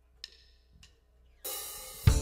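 Two light clicks, then about one and a half seconds in a drum-kit cymbal is struck and rings, slowly fading, as the jazz tune begins.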